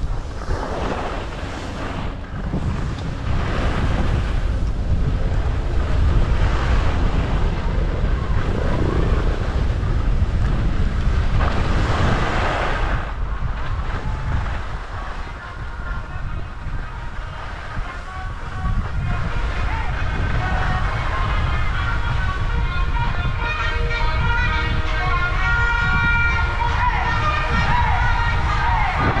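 Wind buffeting the microphone and skis running over snow during a downhill ski run: a continuous low rumble with rushing swells.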